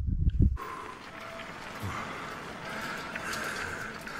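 A brief gust of wind buffeting the microphone, then a film soundtrack's steady night-time background hiss with a faint high hum.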